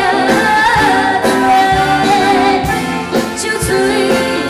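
A woman singing live into a microphone over amplified backing music, with a long wavering held note in the middle.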